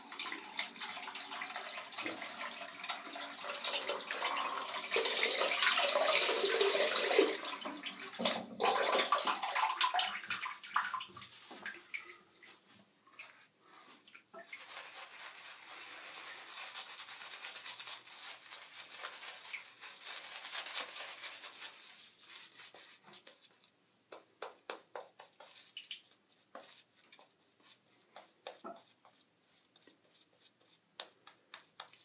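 Water running from a tap for the first ten seconds or so, loudest about six seconds in. Then a synthetic shaving brush working lather on the face, a soft steady swishing that gives way to short separate strokes near the end.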